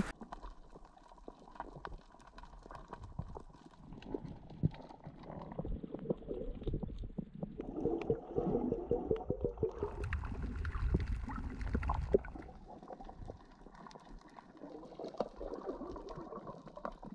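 Muffled underwater sound from a camera held below the surface while snorkeling: water sloshing and gurgling, with many small clicks and crackles throughout. It is quiet, growing louder with a low rumble in the middle.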